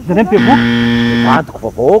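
An electronic buzzer sound effect: one steady, low buzz lasting about a second, starting just under half a second in and cutting off sharply.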